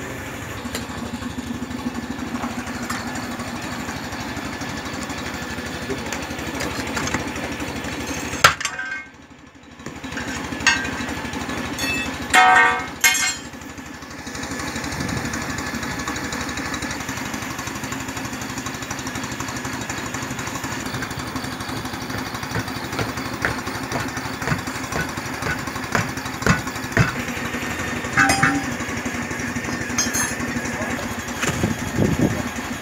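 An engine runs steadily throughout, with scattered sharp knocks and clanks over it. The sound drops out briefly about nine seconds in, and there is a louder burst of knocking around twelve to thirteen seconds.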